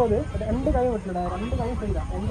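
Human voices in drawn-out, sliding tones without clear words.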